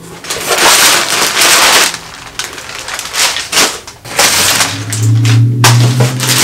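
Crumpled brown kraft packing paper rustling and crackling as it is pulled out of a cardboard box, in several loud bursts. A steady low hum joins about four seconds in.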